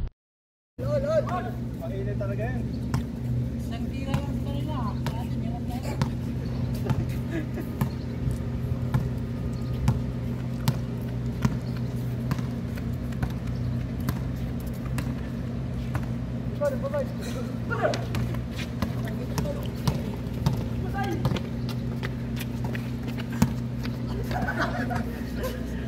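A basketball bouncing on an outdoor hard court in repeated sharp thuds as players dribble and pass, with players' voices and shouts now and then, over a steady low hum. The sound drops out for a moment at the very start.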